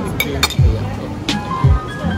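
A few sharp clinks of a metal fork and knife against a ceramic plate, over background music.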